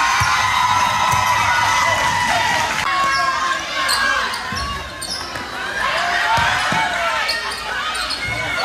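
A basketball bouncing a few times on a gym court floor, heard over the chatter and calls of a crowd in a large, echoing gym.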